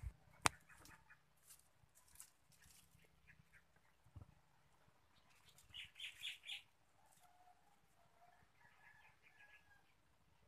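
Mostly near silence with faint bird calls: a quick run of four chirps about six seconds in, then thin drawn-out notes near the end. A single sharp click about half a second in is the loudest sound.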